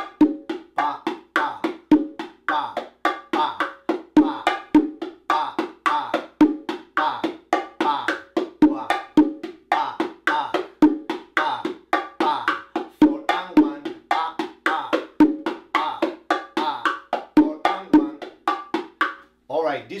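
Pair of bongo drums played by hand in the martillo ("hammer") groove: a steady, even stream of sharp open and muted strokes, about four a second, with the variation accent placed at the very end of the three side of son clave. The playing stops about a second before the end.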